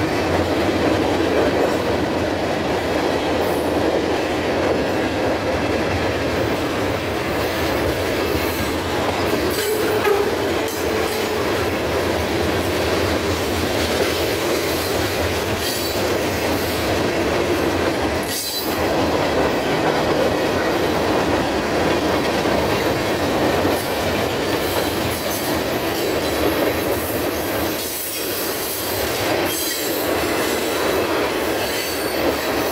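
Freight cars of a CSX train rolling past at close range: steady rumble and clatter of steel wheels on the rails.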